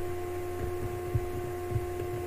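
A steady electrical hum with a clear tone and fainter overtones above it, over a low rumble, with soft low thumps about every half second.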